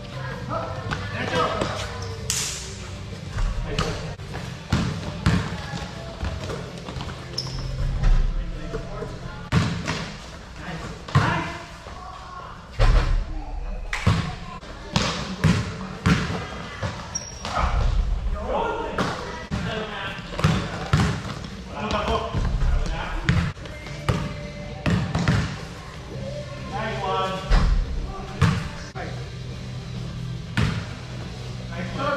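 A basketball bouncing and thudding on the hard court floor again and again during a pickup game, in a large echoing gym. Players' voices call out in between.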